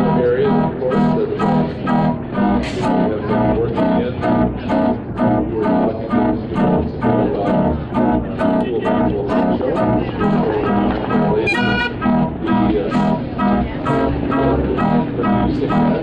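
Dutch street organ playing a tune: a pipe melody over a steady oom-pah bass and chord accompaniment, in an even rhythm of about two beats a second.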